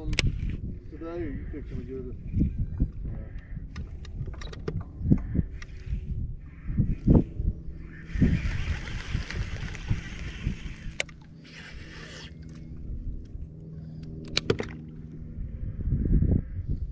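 Handling noises on a fishing boat: scattered knocks and thumps, a few seconds of hiss in the middle, and a faint low steady hum underneath.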